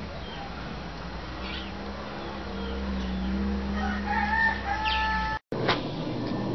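A drawn-out pitched bird call with several overtones, beginning about four seconds in and held for about a second and a half, over a steady low hum; the sound cuts off abruptly near the end.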